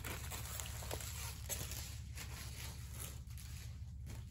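Soft rustling and crinkling of diamond painting canvases and their plastic cover film as the stack is handled and a sheet is moved aside, over a low steady hum.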